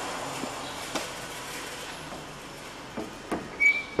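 Workshop noise: a steady hiss with a few light knocks and a short high squeak near the end.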